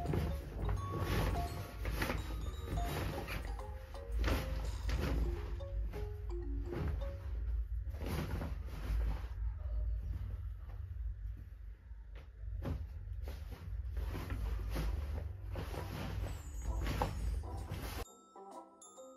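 Clothes rustling as they are gathered up and dropped into a laundry basket, in irregular handfuls, over a low steady rumble, with soft background music.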